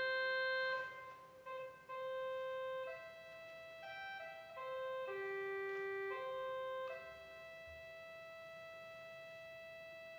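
Organ playing a slow, quiet melody of held notes, settling on a long sustained note about seven seconds in.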